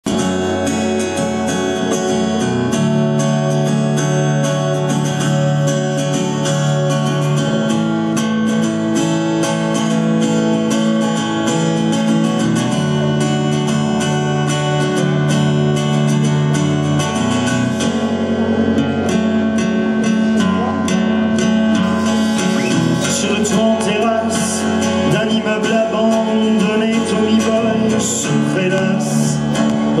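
Live acoustic band playing an instrumental introduction: strummed acoustic guitars over sustained keyboard chords and a drum kit, with the percussion getting busier in the second half.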